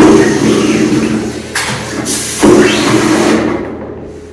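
Pneumatic screen printing machine running a print cycle: compressed air hisses loudly through its valves and cylinder as the print head works. There are two long bursts, the second starting about a second and a half in and fading out near the end.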